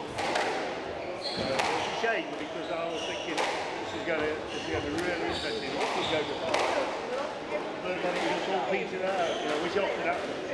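Indistinct voices talking, with a sharp knock roughly every one and a half seconds.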